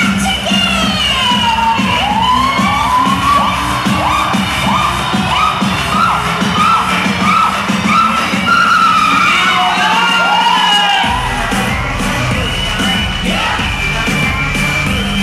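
Live electronic hip-hop music over a festival PA, with the crowd cheering and shouting over it. The bass thins out and then comes back in suddenly near the end.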